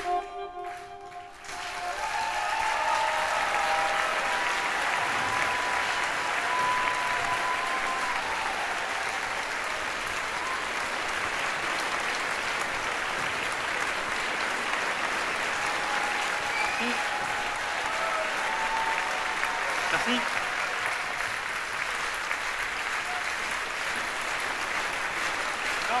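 Large concert audience applauding and cheering, steady and sustained, just after the music stops in the first second.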